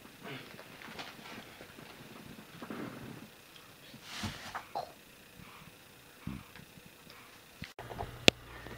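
Faint, irregular breathing and small snuffling sounds of a sleeping newborn baby.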